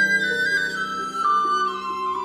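Classical chamber music for recorder and violin: a high recorder line steps downward note by note over sustained lower violin notes.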